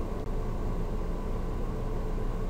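Steady background hiss and hum of the recording, with a faint steady tone in it and no speech.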